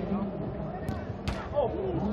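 A football struck twice, two sharp smacks less than half a second apart about a second in, over crowd chatter, followed by a falling shout near the end.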